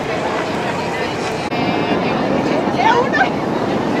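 Steady engine and water noise of a boat under way, with people aboard talking over it.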